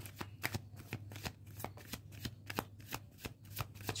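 A deck of tarot cards shuffled by hand, cards slid from one hand to the other in a run of quick, irregular soft clicks.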